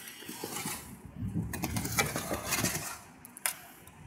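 A metal shovel scraping and pushing heavy volcanic ash across a roof: a run of irregular scrapes and clinks, busiest from about a second in.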